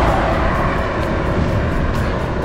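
Steady rushing noise of wind and road on the microphone of a camera on a moving bicycle.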